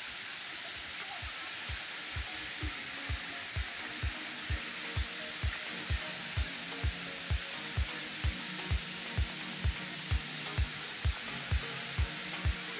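Steady rush of river rapids over rocks, with background dance music fading in over it: a kick drum about two beats a second with hi-hat ticks, growing louder.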